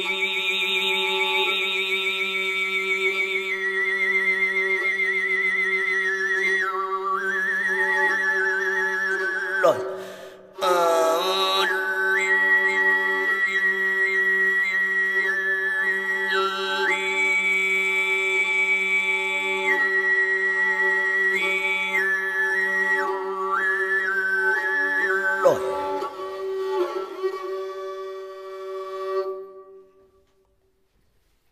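Tuvan sygyt throat singing: a high, whistle-like overtone melody stepping between held notes above a steady low drone. The voice breaks off for a breath about ten seconds in and again near the end, then fades out.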